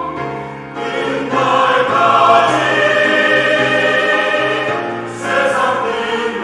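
Mixed church choir of men's and women's voices singing a Korean sacred anthem in parts, holding sustained chords. It dips briefly near the start, swells to full volume over the next couple of seconds, and eases off before rising again near the end.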